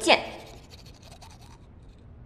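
A woman says one short word, then faint scratching and rustling of a paper ticket handled in her hand, dying away about a second and a half in.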